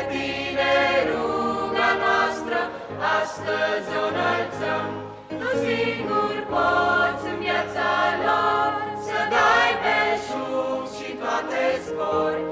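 A church choir sings a Christian song in Romanian, in sustained multi-voice harmony, with a brief break between phrases about five seconds in.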